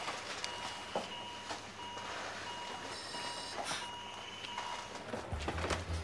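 Hospital medical equipment, such as a patient monitor, beeping in an even, repeated electronic tone, with a brief higher chime about halfway. A low rumble comes in near the end.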